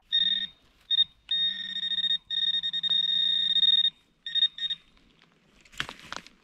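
Handheld metal-detecting pinpointer sounding its steady high electronic tone, with a buzz under it, as it is probed in a dug hole: two short signals, then two long ones, then two quick beeps near the end. The tone signals metal targets, here coins, in the hole.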